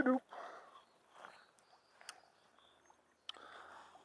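Faint, brief splashes of river water as a small white bass is scooped into a hand-held landing net, with a couple of small clicks.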